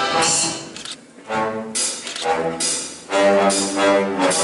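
Orchestral show music with no singing: a run of short, punched chords from brass and low strings, separated by brief gaps.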